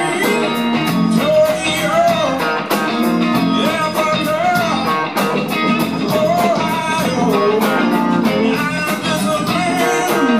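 Live blues band playing: a man sings over electric guitars, drums and cymbals.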